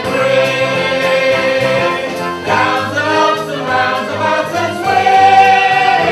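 A choir singing a show tune over instrumental accompaniment, holding long notes, with the loudest sustained note near the end.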